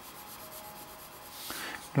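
Pencil lead scratching across paper as lines are drawn, a faint rubbing that swells into a louder stroke about a second and a half in.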